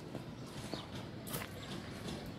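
Faint outdoor background with several short, high chirps, like small birds calling, and a couple of sharp clicks.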